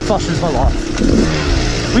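Yamaha YZ250 two-stroke dirt bike engine running while riding down a hill trail, heard from the bike itself with a steady rushing noise over it.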